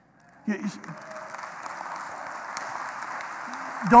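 Congregation applauding, a steady patter of clapping that builds slowly after a brief vocal sound about half a second in.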